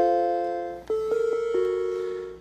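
Macintosh Quadra 650's death chime: a rising run of electronic chime notes that ring on together, then a second run of notes about a second in, fading away. The owner thinks a missing ADB keyboard could explain it.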